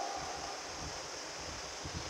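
Faint, steady hiss of room noise, with a faint lingering tone fading out in the first half second.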